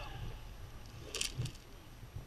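Wind buffeting the microphone of a helmet-mounted action camera during a rope jump from a high-rise roof: a low, steady rumble, with a short sharp rustle about a second in and another soon after.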